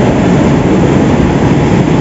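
Loud, steady machinery noise from sugar mill processing equipment running, a continuous low rumble with an even hiss over it.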